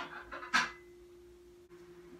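A couple of short, breathy huffs of breath from a person in the first half-second, over a faint steady hum.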